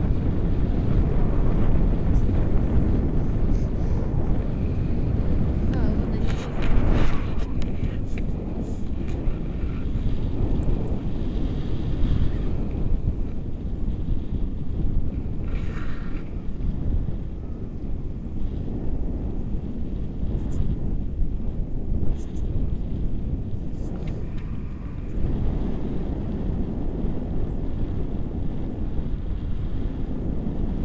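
Wind from the paraglider's forward flight buffeting the camera's microphone: a steady, low rushing rumble, with a few brief knocks and rustles of handling about a third of the way in.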